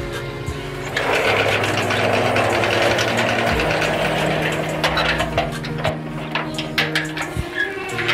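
Slatted metal sliding gate rattling as it is rolled along its track, starting about a second in, followed by a run of sharp clicks and knocks, over background music with sustained tones.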